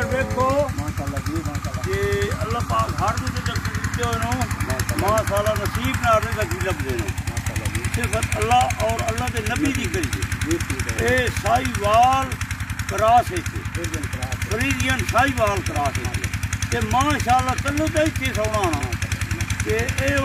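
Men talking over a steady, fast-pulsing engine-like hum that runs throughout.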